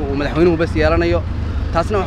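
A man speaking in Somali, close to the microphone, over a steady low rumble.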